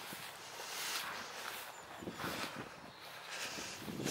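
Soft, irregular footsteps swishing through long grass and leafy undergrowth, with quiet outdoor background.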